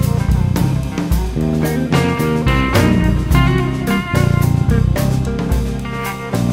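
Blues-roots band playing an instrumental break: electric guitars over a drum kit keeping a steady beat.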